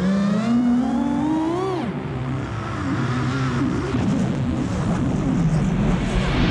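Revving motor whine, its pitch climbing steadily over the first two seconds, dropping sharply, then wavering up and down over a steady low rumble, like a fast drone or flying craft banking and diving.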